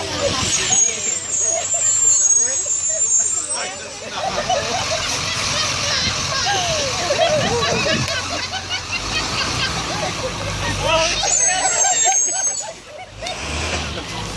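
A small group of people laughing and talking over one another. Vehicle traffic passes in the background, with a low rumble building in the second half.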